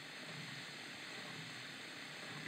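Faint steady hiss with no distinct events, a lull between bursts of played-back speech.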